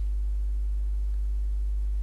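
Steady low electrical hum in the recording: a constant deep tone with a few fainter higher hum lines above it, and nothing else.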